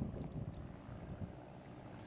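Faint seaside ambience: low wind noise on the microphone over calm water at a rocky shoreline, an even hiss and rumble with no distinct events.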